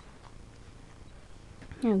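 Faint rustling and a few light knocks as a puppy is stroked on a bedspread, close to the phone. A woman's voice starts just before the end.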